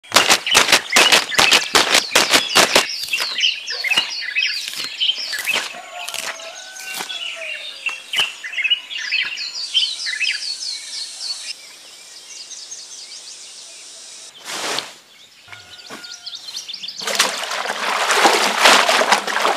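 A fast run of loud, sharp snaps for the first few seconds, then birds chirping and calling over a quieter background. Near the end, water splashes and churns as a bundle of plant stalks is pushed down into a wooden tub of water.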